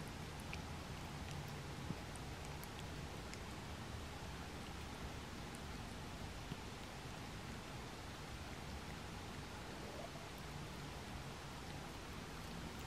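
Faint steady room hum and hiss, with a few soft, faint clicks and rustles from a cat licking and mouthing a toothbrush.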